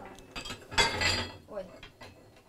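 Cast-iron cooking rings on a coal stove top being hooked off with a metal poker hook, clanking against the plate. The loudest clank comes just under a second in and rings briefly.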